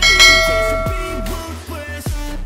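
A bell-like chime sound effect rings once at the start and fades out over about a second and a half, over electronic music with a steady beat.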